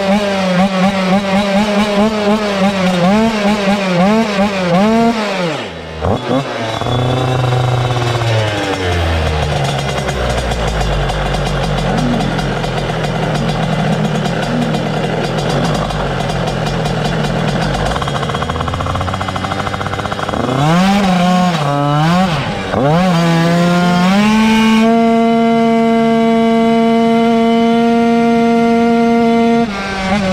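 Two-stroke racing motorcycle engine being blipped, its revs swinging up and down again and again. It drops to a lower, uneven running for a long stretch. After a few more sharp revs it holds steady high revs under full throttle over the last few seconds.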